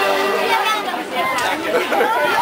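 A crowd of people chattering. An accordion tune is just dying away at the start.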